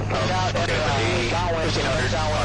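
A voice talking over the steady drone of a Cessna 162 Skycatcher's four-cylinder engine, held at reduced power of about 1600 RPM on final approach, with a constant hiss of cockpit noise.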